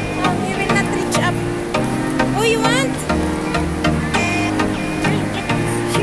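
Background music with a steady beat and a bass line moving in held steps, and a wavering higher melody line over it.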